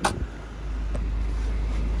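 A single sharp click as the bonnet release lever under the dashboard is pulled, followed by the steady low hum of the 2016 Subaru WRX's turbocharged flat-four idling.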